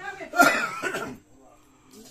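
A person coughing briefly, a rough burst of about a second strongest about half a second in, then quiet.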